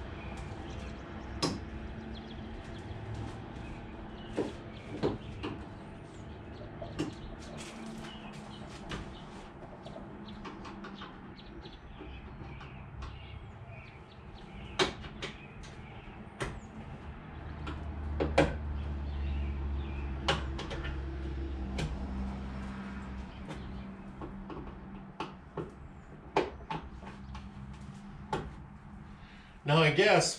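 Scattered clicks and knocks of a car's plastic trunk trim panel and its clips being unlatched and pried loose by hand. A low hum swells for a few seconds in the middle.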